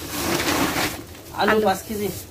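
Thin plastic grocery bags rustling and crinkling as they are handled, followed by a short spoken word about a second and a half in.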